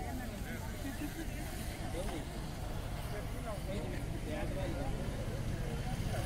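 Indistinct voices of several people talking, with no clear words, over a steady low rumble.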